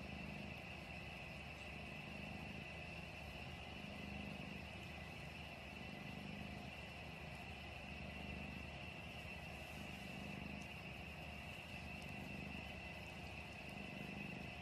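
Cat purring: a faint, low, steady rumble that swells and eases with each breath, every second or two.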